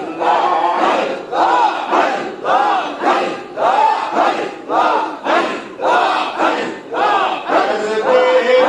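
A crowd of men chanting zikr in unison: a short phrase repeated in a steady rhythm about once a second, each one rising and falling in pitch.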